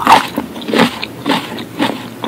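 A mouth chewing a cherry tomato close to the microphone, with wet, juicy bites that come about twice a second, four in all.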